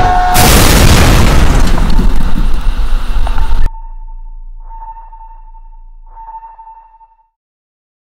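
Loud explosion sound effect, a dense blast that runs for about three and a half seconds and cuts off abruptly. It is followed by a faint, steady high-pitched ringing tone with two brief noisy swells, fading away to nothing.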